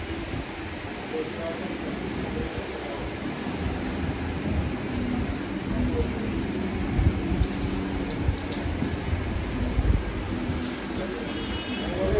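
Indistinct background voices of people talking over a steady low rumble of room and street noise.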